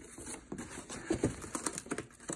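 Hands handling a cardboard axe box and picking at its packing tape and plastic wrap: a run of light, irregular clicks, taps and rustles.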